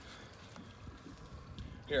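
Faint low rumble and hiss of open-air background noise, with no distinct event. A man's voice starts right at the end.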